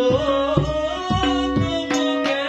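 Tabla accompanying a young male voice singing a Bengali song, over the held reed tones of a harmonium. The tabla strokes come several times a second under the sung line.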